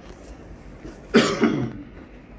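A person's cough: one short, loud burst in two quick pulses just over a second in, against a low background hum.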